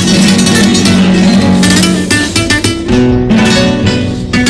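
Spanish guitars strumming rapidly, playing the opening of a Cádiz carnival comparsa pasodoble.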